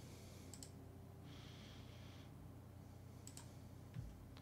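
Near silence: faint room tone with a few soft computer mouse clicks.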